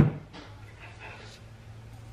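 A plastic salt shaker knocked down once onto a kitchen counter, a short sharp knock. Faint rustles and a low steady hum follow.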